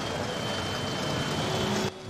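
Street traffic: minibus taxis driving on a potholed, muddy road, a steady engine and tyre noise with a faint high whine through it. The sound cuts off just before the end.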